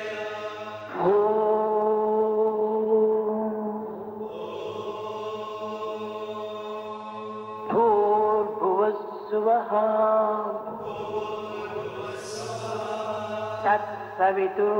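Devotional chanting: a voice holds long, sustained notes, entering about a second in and again near the 8-second mark, with a few short melodic turns, over a steady low drone.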